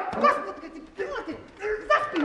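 Several short yelping, whimpering cries and groans in quick succession, wordless, from people scuffling.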